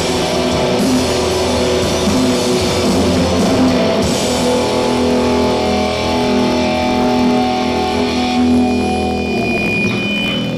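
Rock band playing loud, distorted electric guitars in long sustained chords, the end of a song; the sound thins out near the end.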